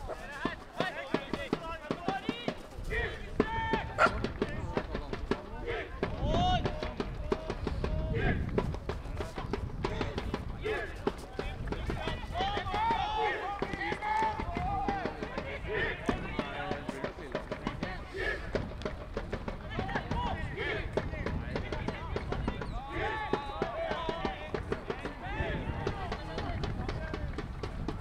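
Voices calling and shouting across an outdoor football pitch, overlapping throughout, over a steady low rumble.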